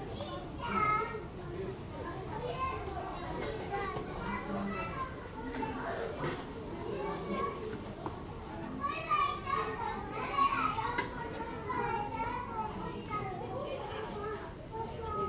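Children's voices chattering and calling out over one another, a crowd of young visitors talking with no single clear voice.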